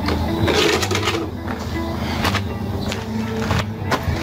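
Background music with held low notes, and a few short clicks or knocks.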